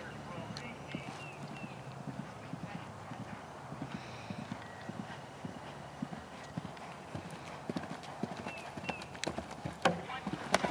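Hoofbeats of a grey event horse galloping on grass turf on a cross-country course, a steady run of dull thuds. A sharper, louder thud comes near the end as the horse jumps a log fence.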